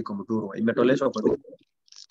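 A man's voice talking over a video call, breaking off about a second and a half in, followed by a short pause with a few faint clicks.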